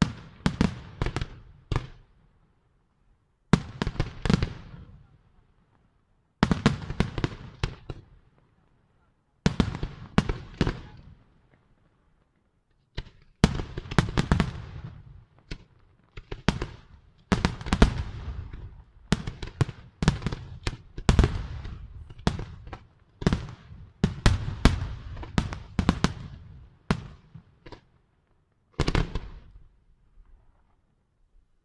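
Aerial firework shells bursting in quick volleys of sharp bangs with rumbling tails. The volleys come a second or two apart for the first ten seconds or so, then run almost without a break from about thirteen seconds in, with one last short volley near the end.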